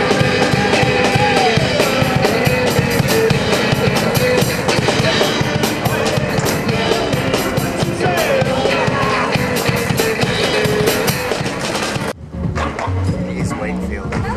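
Rock music with a steady drum beat and guitar, cutting off suddenly about twelve seconds in, after which quieter street sound and voices follow.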